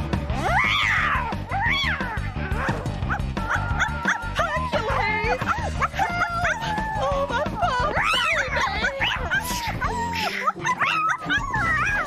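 A cartoon small dog barking and yipping over lively background music, with shrill cries that rise and fall, loudest about a second in and again near eight seconds.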